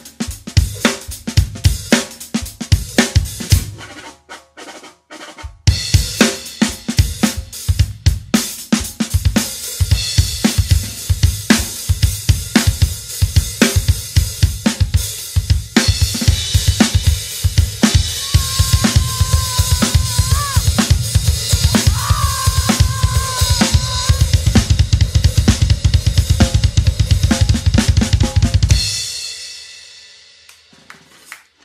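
Drum solo on an acoustic drum kit: snare, toms, bass drum and Paiste cymbals. It eases off briefly about four seconds in, then builds into dense playing with a cymbal wash and a fast, steady bass-drum pulse, and stops abruptly about a second before the end, leaving a short ringing decay.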